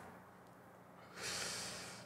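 A man blowing out a breath of smoke after a drag, one breathy exhale that starts about a second in and fades away.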